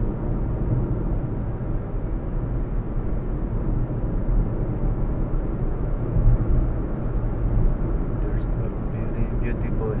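Steady low rumble of a car's engine and tyres on the road, heard inside the cabin while driving at speed, with faint talk near the end.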